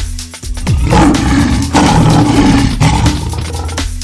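A lion roar sound effect, about three seconds long, starting just under a second in and loudest of all, laid over electronic background music with a steady beat.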